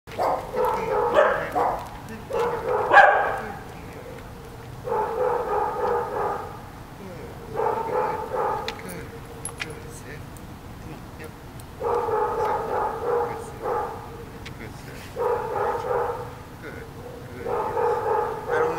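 A dog barking in repeated bouts of rapid barks, each bout about a second long and a couple of seconds apart, with a longer pause midway.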